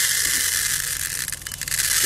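Cauliflower seeds and chaff being poured in a stream into a plastic tub to winnow them: a steady, dense, dry hiss of tiny seeds pattering on the plastic, with a brief dip about one and a half seconds in.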